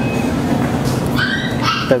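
A dog whimpering in short high-pitched whines from about a second in, over steady background noise.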